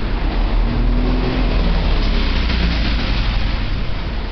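Road traffic passing on a busy city street, with motor-vehicle engine noise that swells toward the middle, over a heavy low rumble of wind buffeting a moving microphone.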